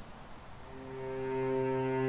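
Background music fading in: low, held bowed-string notes that begin about half a second in and grow steadily louder.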